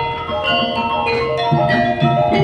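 Javanese gamelan playing: metallophone and gong-chime notes struck in a quick, even pattern, with deeper notes coming in about one and a half seconds in.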